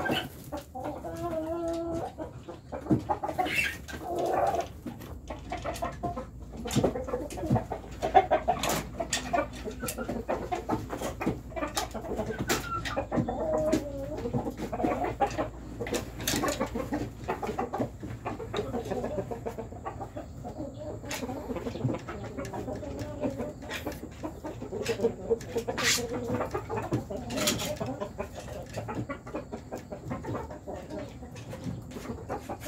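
Young chickens clucking on and off, with many short, sharp clicks scattered throughout.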